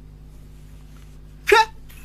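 A man's single short, sharp vocal burst about one and a half seconds in, over a steady low electrical hum.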